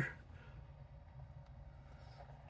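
Quiet room tone: a faint steady low hum with a few faint ticks.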